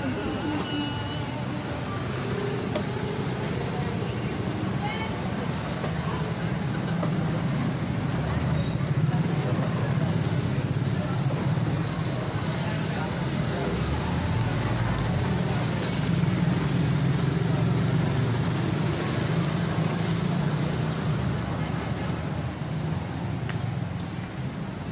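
Busy street traffic: motorcycles and cars passing close by, giving a steady engine and tyre drone that swells louder a few times as vehicles go past. Indistinct voices are mixed in.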